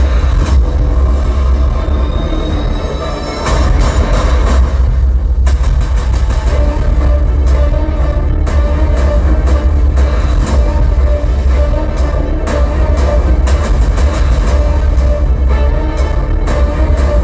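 Cinematic action-trailer music streamed from a phone over Bluetooth and played through a 2.1 amplifier, with heavy, sustained bass. The music dips briefly about three and a half seconds in.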